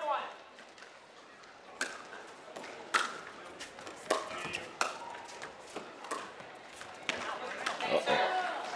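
Paddles hitting a plastic pickleball during a rally: sharp pops, about half a dozen, at uneven intervals, the loudest about three seconds in.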